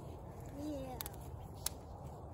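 Dry Christmas tree branches burning in a smokeless firepit, crackling, with a few sharp pops about a second in and again a little later.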